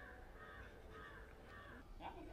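Crow cawing four times in quick succession, faint.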